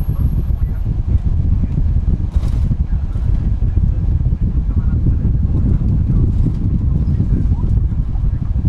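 Inside a moving city bus: a loud, steady, deep rumble of engine and tyres on the road, with a brief hiss about two and a half seconds in.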